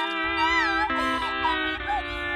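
A young cartoon girl crying, a high wail that wavers up and down in pitch, over a music track of held notes.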